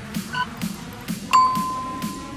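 Workout interval timer counting down over electronic dance music with a steady beat: a short beep, then a louder long beep held for about a second that marks the end of the set.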